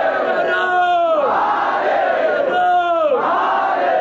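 A crowd shouting victory slogans in unison, two long drawn-out cries, each falling in pitch as it ends, with a roar of many voices between them.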